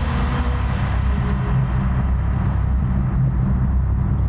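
A loud, steady low rumble, with a hissing wash over it that fades away during the first couple of seconds.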